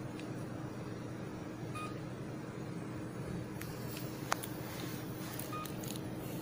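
HIFU 2-in-1 machine giving short electronic beeps about four seconds apart over a steady electrical hum, with a few sharp clicks, the loudest a little past the middle.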